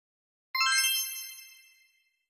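Subscribe-button animation sound effect: one bright electronic ding about half a second in, ringing with several high tones and fading out over about a second and a half.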